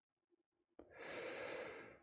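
A man's quiet in-breath, about a second long, starting a little under halfway through after a moment of silence, drawn just before he speaks again.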